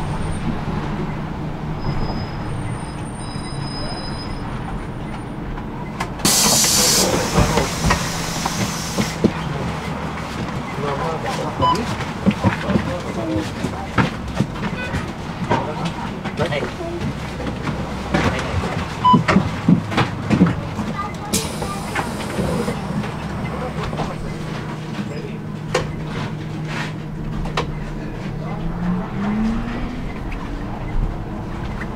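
City bus heard from inside the cabin: the engine runs with a steady low hum under road noise, with clicking and rattling from the cabin. About six seconds in comes a loud hiss of air lasting some three seconds, with a shorter one around twenty seconds in. Near the end the engine note rises as the bus accelerates.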